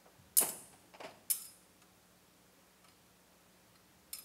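A metal thurible (censer) swung on its chains while incensing, giving three sharp metallic clinks in the first second and a half, the first the loudest.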